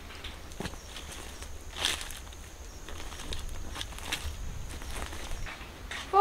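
Faint, irregular footsteps on the ground over a steady low outdoor rumble, with a louder rustle about two seconds in and a faint high whine through the middle.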